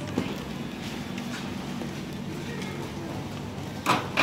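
Street-market ambience: a steady bustle of distant chatter and activity, with a sharp knock or clatter near the end.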